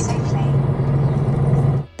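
Diesel engine of an articulated lorry's tractor unit running at low speed, heard inside the cab as a steady low hum. It cuts off suddenly near the end.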